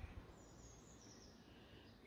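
Near silence: quiet outdoor ambience with a faint, high bird call that falls slightly in pitch, about half a second in.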